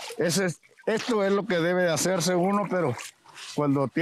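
A man speaking, with water trickling and dripping as a wooden adobe brick mold is dipped into a barrel of water to wet it.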